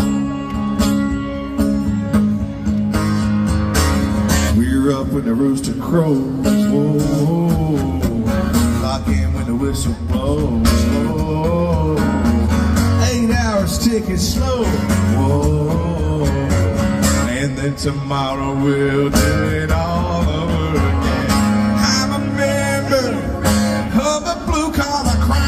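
Live country band music with guitar, played loud through a festival PA and heard from within the crowd, running without a break.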